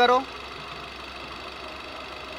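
Car engine idling with a steady, even hum, picked up by a wireless mic pressed against the clutch-release mechanism while the clutch pedal is held half down. This is a test for a clutch noise that the mechanic traces to the clutch cable rubbing as it takes up tension.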